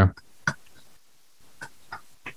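A spoken word trails off at the start, then a few light clicks at a computer: one sharper click about half a second in and two fainter ones near the end.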